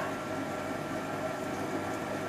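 Tomatoes frying in a pan: a steady, even sizzle.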